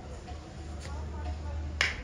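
A single sharp snap near the end, over a steady low hum and faint voices.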